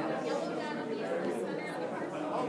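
Indistinct chatter of several people talking at once, their voices overlapping into a steady hubbub.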